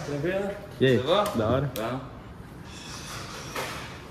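Men's voices talking for about two seconds, then quieter room sound with a couple of faint clicks.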